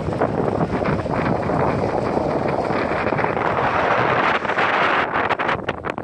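Wind blowing across the microphone, a loud steady rush that breaks into short choppy gusts about five seconds in.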